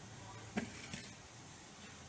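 A single sharp click about half a second in, with a fainter tick just after, over a faint steady room hum.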